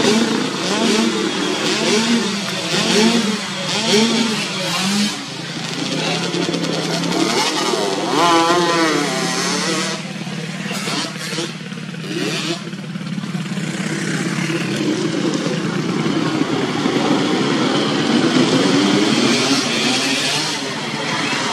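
Motocross dirt bike engines running at the track. For the first few seconds one is revved in short blips about once a second, then they run on more steadily.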